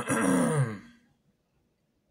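A man clearing his throat once: a short rasping, voiced sound that falls in pitch, lasting under a second.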